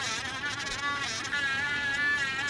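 Handheld electric engraving pen running with a high buzzing whine, its pitch wavering and dipping repeatedly as the bit works into the clay.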